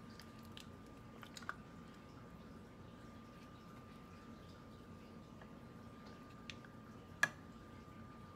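Soft squishing and light scraping as a silicone spatula pushes thick mayonnaise out of a measuring cup into a bowl, with a few light clicks, the sharpest near the end. A faint steady high hum runs underneath.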